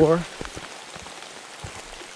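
Steady rain falling, with a couple of single drops tapping close by.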